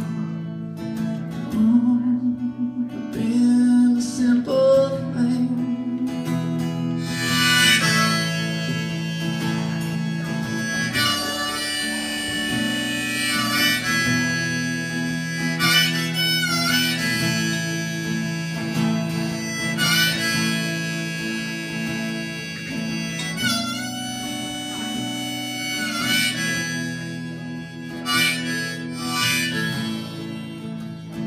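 Harmonica solo over strummed acoustic guitar chords, with several notes bent down and back in pitch.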